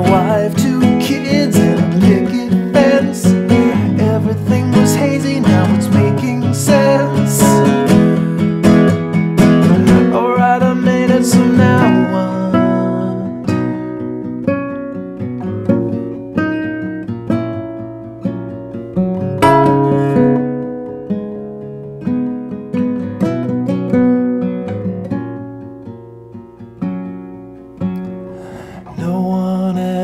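Nylon-string classical guitar played as a song accompaniment. It is strummed hard and densely for about the first twelve seconds, then drops to softer, sparser picked notes and chords.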